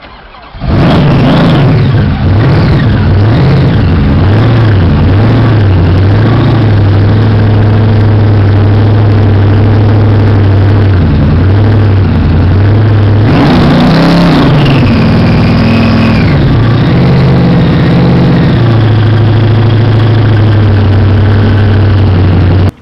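Supercharged V8 of a 1970 Dodge Charger starts under a second in and runs very loud, near the recording's limit. It idles unevenly for the first few seconds, is revved up and back down around the middle, then settles into a steady idle.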